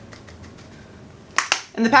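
Faint soft ticks, then two sharp clicks close together about one and a half seconds in, from a plastic pressed-powder compact being handled. A woman starts speaking just at the end.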